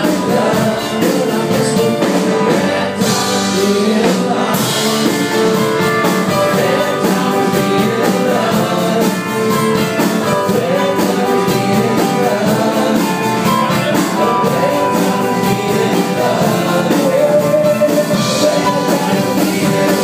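Live band playing a song: a lead voice singing over acoustic and electric guitars and keyboard, steady throughout.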